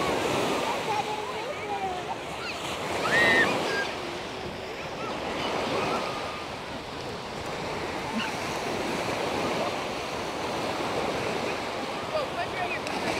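Small waves breaking and washing up over the sand at the shoreline, a steady rush of surf.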